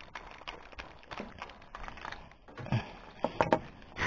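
Faint, irregular small clicks and knocks from fishing rods and gear being handled in a wooden boat, with a few louder knocks in the last second or so.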